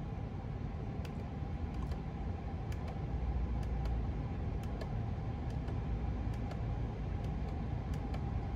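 Steady low cabin hum of a parked Chevrolet Tahoe idling, its 5.3-litre V8 running at rest, with a few faint clicks from the steering-wheel buttons as the gauge-cluster pages are changed.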